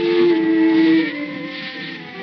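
Instrumental tango from a 1920 acoustic Victor recording by a small típica orchestra of bandoneon, violin and piano. A loud held note lasts about a second, then quieter playing follows, over steady record-surface hiss.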